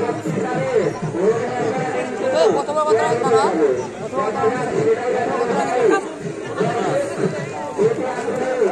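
Several men's voices talking and calling out over one another: chatter among cricket players and onlookers.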